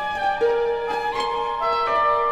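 Symphony orchestra playing contemporary classical music: several high sustained notes held and shifting step by step, with a few sharp attacks along the way.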